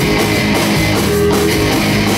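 A live rock band playing at full volume: two electric guitars, an electric bass and a drum kit, loud and steady throughout.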